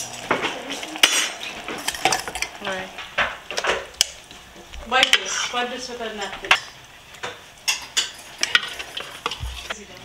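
A metal spoon scraping and clinking against a metal pot and a ceramic baking dish as thick cooked callaloo is spooned out, with sharp clicks scattered irregularly throughout.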